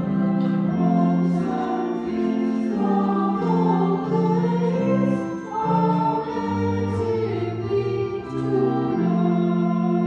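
A small choir singing a slow hymn in several parts, with long held notes that change step by step.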